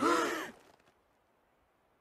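A girl's short voiced sigh, about half a second long, its pitch rising and then falling.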